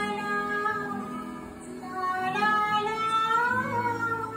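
A woman singing a Bengali song in long held notes. The voice eases off about halfway, comes back, and slides upward in pitch near the end.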